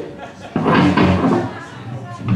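A person's voice, a loud shout lasting under a second, starting about half a second in.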